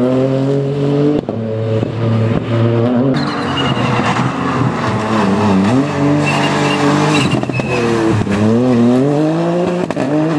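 Ford Fiesta rally car engine revving hard, its pitch dropping and climbing again several times as it lifts and changes gear through tight corners. Through the middle stretch the tyres give a high squeal as the car slides around a chicane.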